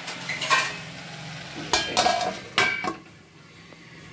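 A steel lid being set onto an iron kadhai of cooking vegetables: several metal clinks and knocks, some ringing briefly, over a faint low hum from the stove. The clatter stops about three seconds in.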